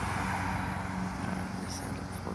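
A steady low mechanical hum, like a running motor, under faint outdoor background noise.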